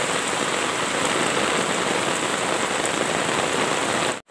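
Heavy rain pouring steadily onto flooded ground and standing water, an even, unbroken wash of sound.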